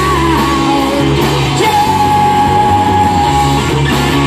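A live rock band playing through a PA: electric guitars, bass and drums with a man singing, who holds one long note for about two seconds through the middle.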